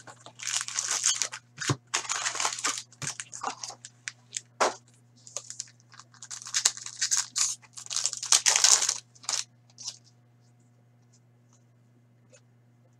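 Foil trading-card pack wrapper torn open and crinkled by hand, in a run of short rustling tears. It stops about two seconds before the end.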